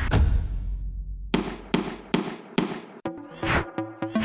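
Edited blaster sound effects: a sharp bang with a long decaying rumble, then four quick shot sounds about half a second apart. About three seconds in, electronic music with a beat starts.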